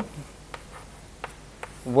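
Chalk writing on a blackboard: a few faint, short taps and scratches as the chalk strikes and drags across the board.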